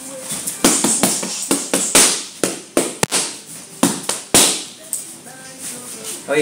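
Boxing gloves striking focus mitts: an irregular run of about a dozen sharp smacks from punch combinations, the hardest about two seconds in and again just past four seconds.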